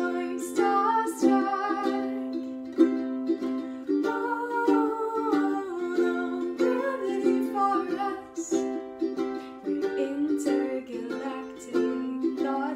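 Ukulele strummed in a steady rhythm of chords, with a woman's voice singing a wordless melody over it.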